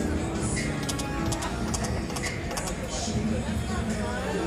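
Slot machine's game sounds during a losing spin: electronic tones and a run of short high clicks as the reels play out, over casino background music and distant voices.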